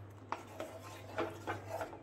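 A spatula stirring a thick, creamy curry gravy in a non-stick pan, with a few short scrapes against the pan as the cream is mixed in.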